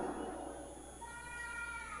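A faint, high-pitched cry lasting about a second, starting halfway in and sinking slightly in pitch.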